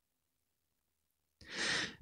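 Silence, then about one and a half seconds in a short, breathy in-breath from the voice-over narrator just before he speaks again.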